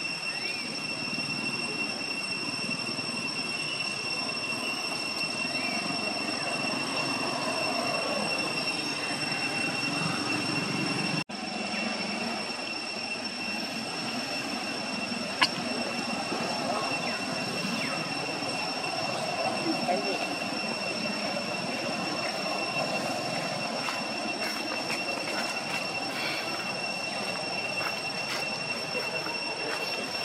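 Steady outdoor ambience: a constant high-pitched whine over a low murmur that carries faint voices. A brief dropout comes about eleven seconds in, and a single sharp click about fifteen seconds in.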